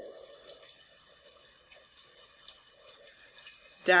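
Steady rain sound: an even hiss with faint scattered ticks.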